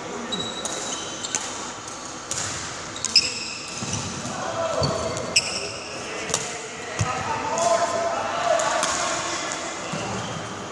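Badminton rally in a reverberant sports hall: sharp racket-on-shuttlecock hits every second or so, with the loudest two about three and five and a half seconds in, amid quick footsteps and shoe squeaks on the court floor.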